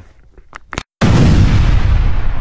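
A sound-effect boom for a logo outro: a sudden deep hit about a second in, after a brief moment of dead silence, that rumbles on and slowly fades.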